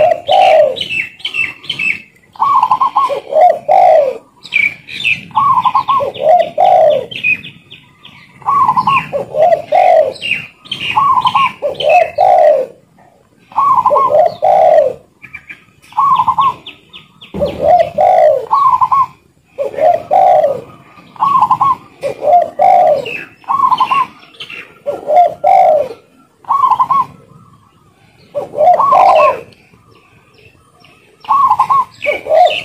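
Spotted dove cooing over and over, a phrase about every two seconds, each a short higher coo dropping to lower coos. High chirping runs underneath.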